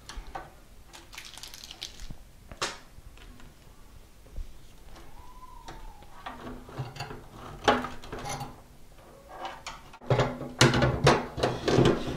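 Scattered clicks and light knocks of a 3.5-inch SATA hard drive and its cables being handled and positioned inside a steel PC tower case. The sounds grow busier and louder in the last two seconds.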